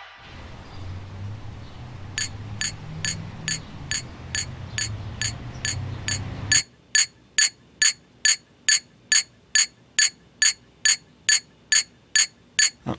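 Light, ringing clinks of a small hard object being struck, evenly spaced at about two a second, starting about two seconds in. A low rumble lies beneath them and stops abruptly about six and a half seconds in.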